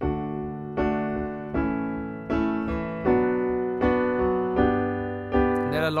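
Keyboard in a piano sound playing a I–V–vi–IV chord progression in D major (D, A, B minor, G): eight chords struck at an even pace, a little under one a second, each ringing on into the next.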